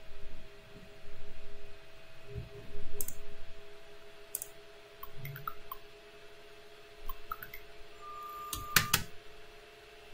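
A LEGO SPIKE Prime motor whines briefly near the end as it swings the robot's lifting arm to position zero, finishing with a couple of sharp clacks. Before that there are scattered soft clicks and knocks over a steady low hum.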